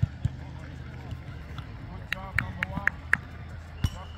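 Short, high shouts from players on an outdoor football pitch, bunched about halfway through. There are a few sharp thuds: two at the start and one near the end.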